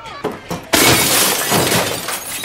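Glass shattering and breaking with a crash that sets in about three quarters of a second in and lasts about a second, over shouting voices.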